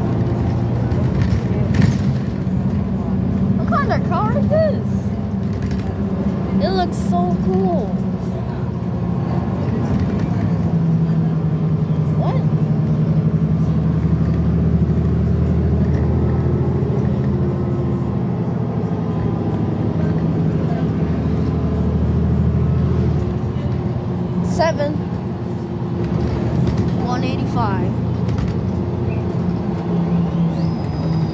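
Cabin sound of a 2017 New Flyer XD40 diesel transit bus under way: a steady engine drone that rises and falls in pitch as the bus speeds up and eases off, with faint voices in the background.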